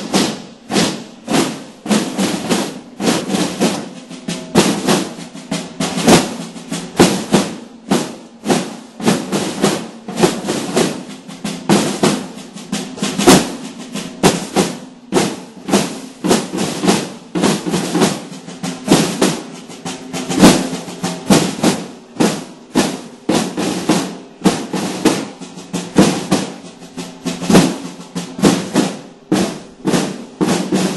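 A group of red-shelled processional snare drums beaten together in a steady, repeating marching rhythm, with rattling strokes and drum-roll fills.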